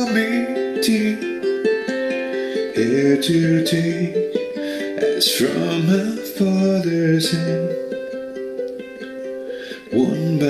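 A man singing a slow hymn to his own strummed ukulele, with a chord struck every second or two. The sound fades somewhat toward the end, and a fresh strum comes in just at the close.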